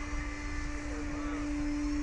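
Steady machine hum holding one constant pitch over a low rumble, from the Slingshot ride's machinery while the riders sit waiting for launch.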